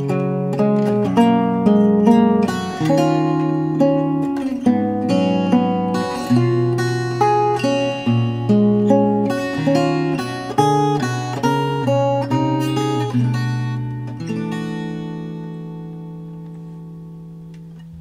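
1956 Gibson LG-1 small-body acoustic guitar played fingerstyle with a capo: a slow ballad melody of plucked notes over bass notes, then a chord left to ring and fade away over the last few seconds.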